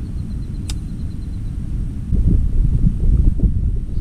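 Wind rumbling on the microphone, an uneven low noise that grows louder about halfway through, with a single sharp click about a second in.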